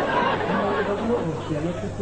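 Background chatter of people's voices, a confused babble, with one voice talking more clearly from about half a second in.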